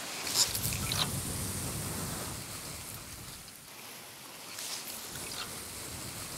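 Sea waves washing against a rocky shore, with wind noise. A brief louder sound comes about half a second in, and a few faint clicks about five seconds in.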